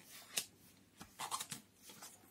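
Paper being handled and folded by hand: a short sharp crackle, then a longer rustle about a second in, as a glossy magazine page and a sheet of plain paper are creased.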